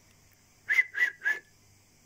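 Three short whistled notes in quick succession, about a third of a second apart, the last one sliding slightly down in pitch.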